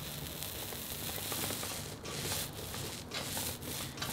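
Small hand roller rubbing back and forth over wet epoxy resin on carbon fiber cloth, a steady wet rubbing with brief breaks as the strokes turn. The roller is spreading the extra resin evenly between carbon fiber layers so the layup lies flat.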